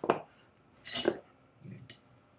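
Small steel bolt parts of a Howard Thunderbolt carbine clinking together once about a second in, with a fainter tap near the end, as the striker spring is taken out of the bolt.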